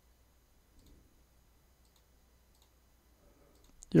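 A computer mouse clicking faintly a few times in near quiet, once about a second in and again just before the end.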